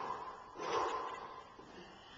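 A man breathing hard from the exertion of hopping on one foot, with a loud rushing breath just after half a second in; the sound fades toward the end.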